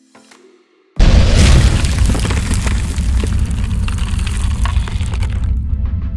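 Outro music: a few soft plucked notes, then about a second in a sudden loud cinematic boom, a heavy low hit with a long crackling tail that slowly fades before the melody comes back near the end.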